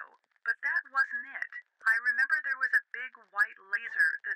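Speech only: a narrating voice, thin and filtered like a telephone line.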